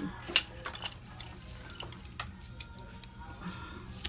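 Rummaging among belts and other goods in a shopping cart: scattered clicks and clinks of metal belt buckles and hardware, the sharpest about half a second in.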